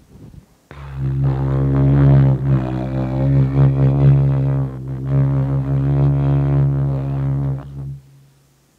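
Didgeridoo starting about a second in: one steady low drone with shifting overtones, briefly dipping just before the midpoint, then dying away at the end.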